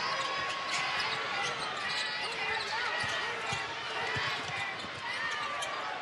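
A basketball being dribbled on a hardwood court, a few low bounces over the steady noise of an arena crowd with scattered voices.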